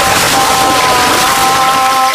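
Cartoon sound effect of water spraying from a hose in a loud, steady hiss, over a few held music notes.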